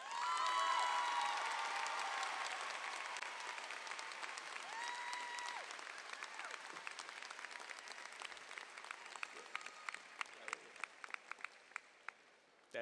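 Large audience applauding and cheering, with shouting voices early and a single held whoop about five seconds in. The applause starts at once, loudest at the start, then slowly dies away to scattered separate claps near the end.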